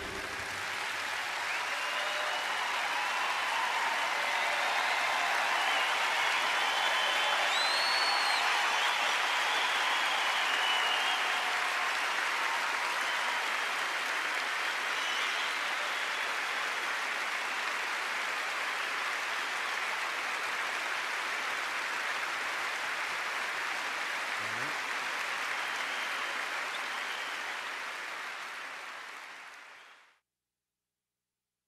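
Audience applauding, building over the first few seconds, holding steady, then fading out near the end.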